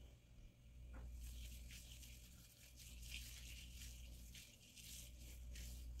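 Faint, crackly rustling of fingers working through dry, coily hair, in short scattered bursts.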